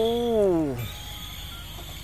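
A person's drawn-out exclamation "oh", held and then sliding down in pitch until it stops under a second in, followed by a faint steady high hum.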